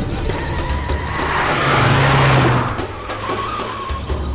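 Car speeding past close by: a rushing whoosh of tyre and wind noise swells about a second in, peaks past the middle and then dies away.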